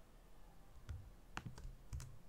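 A few faint, separate clicks of a computer keyboard while code is pasted and selected in an editor.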